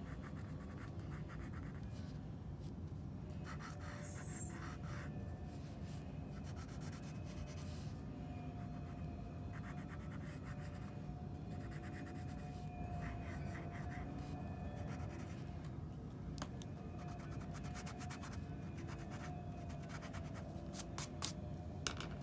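A pencil sketching on sketchbook paper: intermittent light scratching strokes in short bursts, over a steady low background hum.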